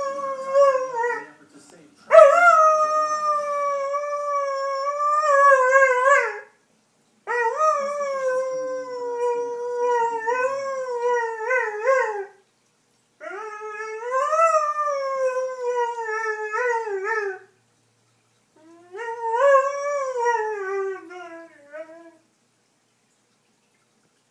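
Afghan hound howling at a television commercial: a run of long howls, about four full ones plus the end of another, each several seconds long and wavering in pitch, with short pauses for breath between.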